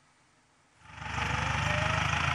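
Near silence, then under a second in a tractor's engine running comes in and holds steady, with a fast even pulse.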